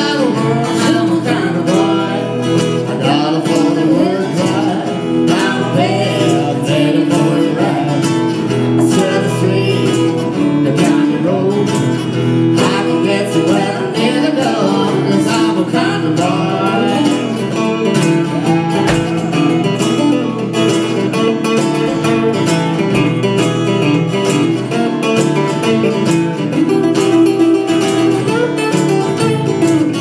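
Live acoustic country music: two acoustic guitars strummed with singing over them, played steadily without a break.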